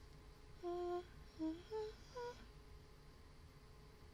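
A woman humming a short phrase of four brief notes with closed lips, the notes stepping upward in pitch; it is faint.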